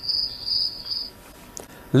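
Cricket chirping sound effect: a steady run of high chirps, about two or three a second, that stops about a second in. The stock "crickets" gag marks an awkward silence, nothing having been said.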